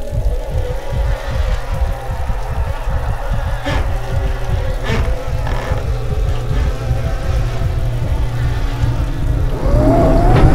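Horror film soundtrack: a steady deep drone with a fast low pulsing, a few faint held tones above it, and two brief sharp accents about four and five seconds in.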